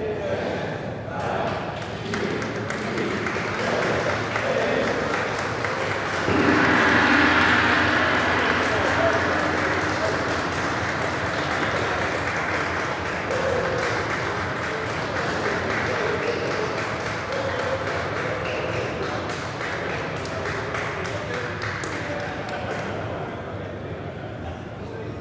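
A crowd's voices and clapping, jumping louder about six seconds in when the ceremonial gong is struck; the gong's steady hum lingers for a few seconds under cheering and applause that slowly die down.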